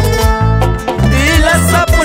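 Andean folk band music with plucked strings, a wavering melody line, and a bass line that keeps a steady beat.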